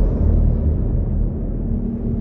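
Loud, deep rumbling sound effect of an animated logo intro, slowly easing off.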